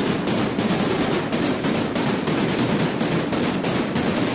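Synthesized noise percussion patch (mixed white and pink noise, filtered, EQ'd and distorted) playing a rapid, continuous run of hard noisy hits. It runs through mid-side compression that squeezes the sides more than the mids.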